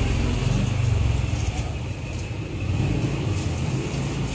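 A steady low rumble of a running motor vehicle engine, swelling and easing slightly.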